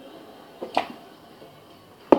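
A plastic mini hockey stick knocking a small ball on carpet: two quick clicks a little over half a second in.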